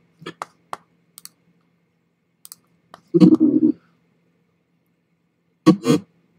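Scattered clicks of a computer mouse and keyboard during video editing, about six in the first three seconds. Two short, louder bursts of sound come about three seconds in and again just before the end.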